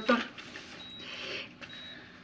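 A sheet of paper rustling softly as it is handled, a brief hiss about a second in.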